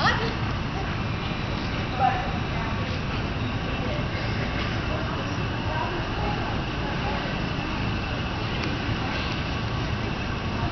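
Steady hum and murmur of a large indoor arena, with distant voices in the background. There are two brief louder sounds, one at the very start and one about two seconds in.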